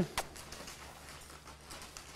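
Faint footfalls of a horse walking on soft arena sand, with one sharp click just after the start.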